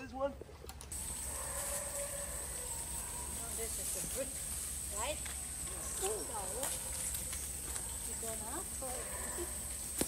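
Outdoor ambience: a steady, high-pitched buzz sets in about a second in and holds, with faint, distant voices now and then.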